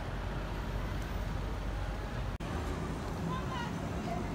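Street ambience with steady low traffic noise from cars and buses. A little past halfway it breaks off in a brief dropout, after which people's voices are heard.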